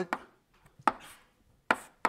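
Chalk striking a blackboard as digits are written: three short, sharp taps, the last two under a second apart.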